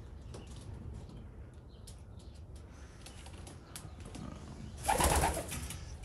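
Domestic pigeons in a loft, cooing softly, with scattered light clicks and scuffs of feet. A short, louder burst of noise comes about five seconds in.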